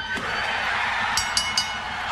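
Arena crowd noise during a pinfall count, with one slap of the referee's hand on the ring mat right at the start and a few short high-pitched sounds about a second in.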